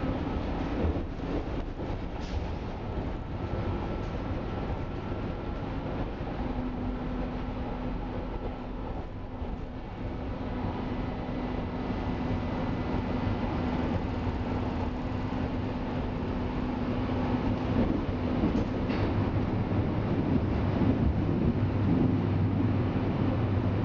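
Berlin U-Bahn F87 train running at speed, heard from inside the car: a steady rumble of wheels on rails with a steady hum through the middle. The sound grows louder over the last few seconds as the train runs into a tunnel.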